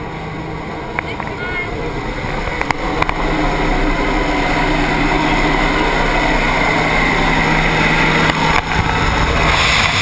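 Jump plane engine and propeller noise in the cabin: a steady low drone with rushing air from the open jump door that grows louder over the first few seconds and swells again near the end as the tandem pair reaches the doorway.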